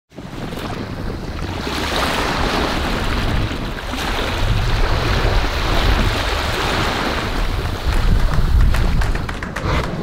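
Small waves washing and lapping onto a sandy beach, rising and falling in level, with wind rumbling on the microphone underneath.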